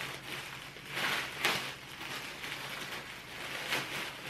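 Wrapped packaging being torn and crinkled open by hand, in crackling surges, the loudest about a second and a half in and another near the end.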